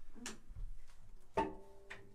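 A few sharp clicks and knocks of acoustic instruments and stands being handled as the players pick up their instruments: one about a quarter second in, another about a second and a half in, and one near the end.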